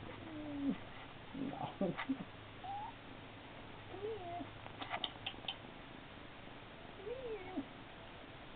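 Siamese kitten meowing, about five short high calls that slide down or rise and fall in pitch, with a few sharp clicks near the middle.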